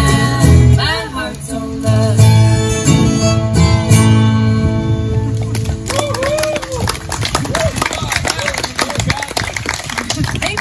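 An acoustic bluegrass band of resonator guitar, mandolin, acoustic guitar, upright bass and fiddle plays the final bars of a song, with the music ending about six seconds in. Then audience clapping and voices follow.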